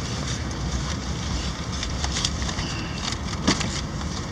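Cabin noise of a 2003 Ford Explorer Sport Trac rolling slowly: the steady low rumble of its 4.0-litre V6 and tyres heard from inside the cab, with a few light clicks.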